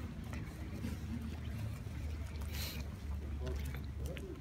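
Low, steady rumble of a car engine idling, with a few faint clicks and a brief hiss about two and a half seconds in.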